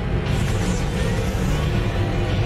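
Movie soundtrack playing: dense, steady music with action sound effects during a fight sequence.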